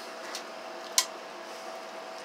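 A single sharp click about a second in, over a steady faint hum and hiss.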